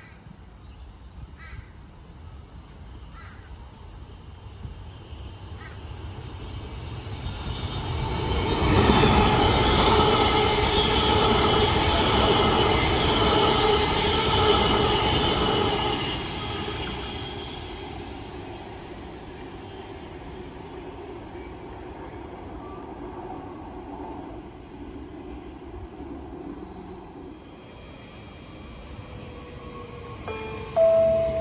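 Queensland Rail New Generation Rollingstock electric train passing through the station. Its sound builds over several seconds and is loudest for about seven seconds, a steady whine over the rumble and squeal of the wheels, then fades away.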